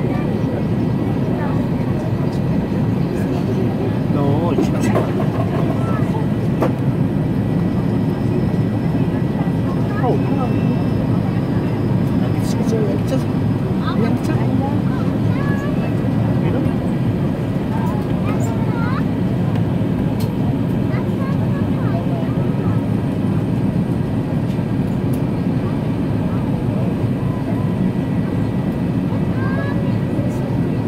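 Steady, even cabin noise inside an Airbus A380 in flight: the rush of its engines and airflow, low and unchanging, with faint chatter from other passengers underneath.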